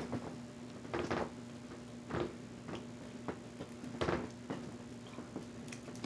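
Scattered light clicks and taps, about eight of them at irregular intervals, from small objects being handled while a marker is put together, over a faint steady hum.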